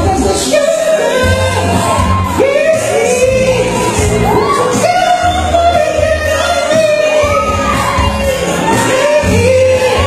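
A man singing live into a handheld microphone over an upbeat pop backing track with a steady bass beat, holding long, gliding notes.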